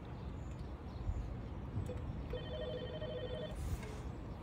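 Electronic gate entry panel sounding a short beep, then a rapidly pulsing, trilling ring for just over a second as its button is pressed.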